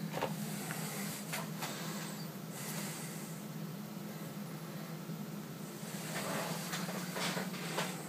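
A steady low hum with a few brief rustles and bumps from the handheld camera being moved.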